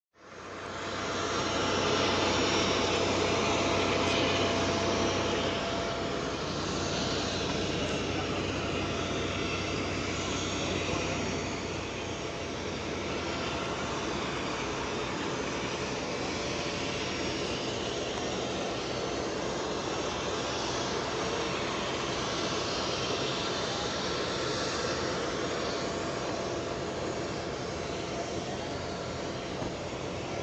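Lockheed P-38 Lightning's twin Allison V-1710 V-12 piston engines running, a steady propeller-aircraft engine sound that fades in at the start, is loudest for the first few seconds and eases a little about twelve seconds in, with a slowly shifting whooshing quality on top.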